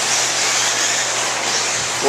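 Steady, even rushing noise of 1/8-scale electric RC buggies racing on an indoor dirt track, with no distinct pitch and no sharp impacts.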